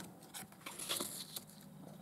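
A paper scratch card being handled and laid down: faint light rustles and small clicks, with a brief scuffing rustle about a second in.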